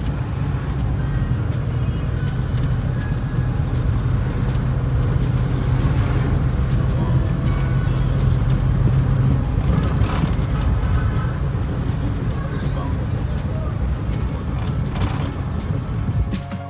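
Inside a moving passenger bus: a steady low engine drone with road noise, easing off about ten seconds in, with voices in the background.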